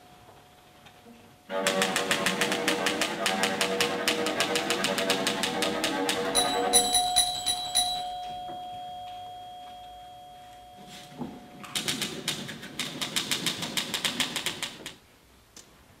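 Manual typewriter typed in fast, dense bursts of keystrokes, one starting about a second and a half in and lasting some five seconds, another near the end lasting about three, with the carriage bell ringing once in between. A cello holds a long note under the first half.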